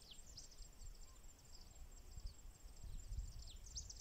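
Faint open-air ambience: a low wind rumble on the microphone under many quick, high, downward-sweeping bird chirps, which come more often near the end.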